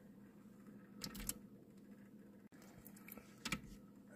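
Faint low steady hum of a small motorised display turntable, with a few light clicks and knocks about a second in and again near the end as a die-cast toy car is handled and set on its clear plastic stand.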